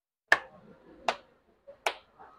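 Three sharp slaps of a ball of kalai ruti dough being flattened between the palms by hand, about three-quarters of a second apart.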